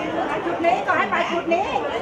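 People talking, several voices chattering at once.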